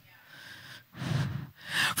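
A woman breathing into a close handheld microphone: a faint breath, then a louder, breathy intake about a second in.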